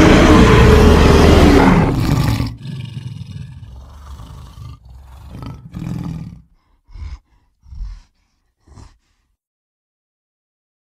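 Giant-ape monster roar sound effect, mixed from film creature sounds such as King Kong's: one loud roar lasting about two and a half seconds, trailing into lower rumbling growls that fade, then three short grunts near the end.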